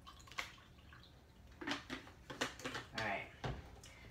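Water poured from a plastic bottle into a drinking glass, coming out in uneven glugs, with a short knock about half a second in.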